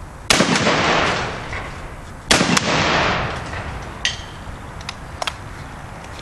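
Two shots from a 10-gauge double-barrel magnum shotgun loaded with 0000 buckshot, fired about two seconds apart, each report followed by about a second of fading echo. A few faint sharp clicks follow.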